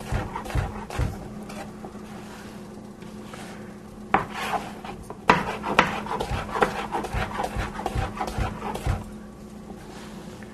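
A knife cutting a cucumber into cubes on a cutting board: a series of irregular knocks as the blade meets the board, with some rubbing. A few knocks come at the start, and the cutting is busiest from about four seconds in until near the end.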